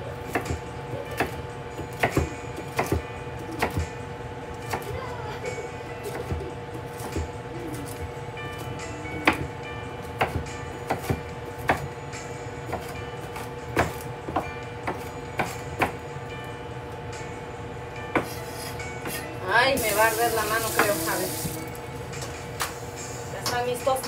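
Chef's knife chopping jalapeño on a wooden cutting board: irregular sharp knocks of the blade against the board, roughly one a second, over a steady background hum.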